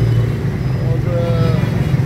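Small motorcycle-type engine running steadily under a moving ride through street traffic, with a voice heard briefly about a second in.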